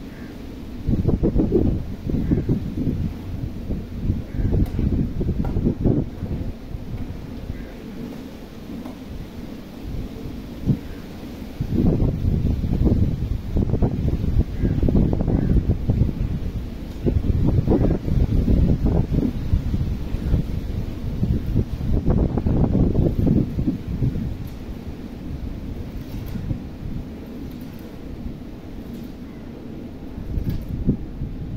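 Wind buffeting the microphone: a low rumble that swells and fades in gusts of a few seconds, loudest through the middle of the stretch.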